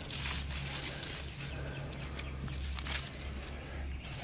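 Pea vines and leaves rustling and crackling irregularly as a hand parts the foliage, over a steady low hum.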